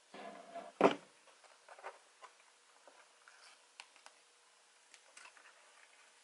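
One sharp knock about a second in, then scattered light taps and clicks: a stretched canvas and a plastic edge catcher being handled and set down on a worktable.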